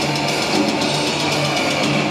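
Death metal band playing live: heavily distorted electric guitars, bass and drums in a dense, steady, loud wall of sound, a low note repeating under fast drumming.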